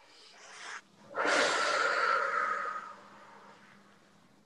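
A person taking a deep breath in, then blowing it out hard through the mouth in one long exhale of about two seconds that fades away, as a relaxation breathing exercise ends.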